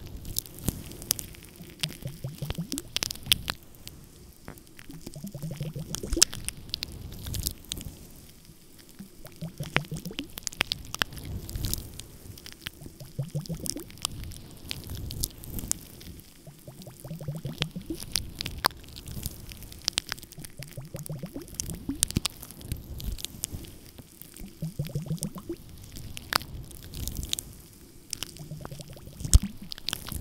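A pair of glass facial ice globes rubbed and pressed over a furry microphone windscreen, close to the mic. Muffled rubbing strokes come every few seconds under a dense crackle of small clicks.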